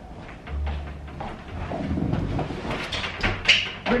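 Footsteps on a hardwood floor, with irregular light knocks and rustling as a person crosses the room.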